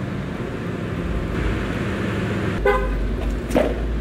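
Car engine running low in the alley while a car is being manoeuvred, with a short car horn beep about two and a half seconds in.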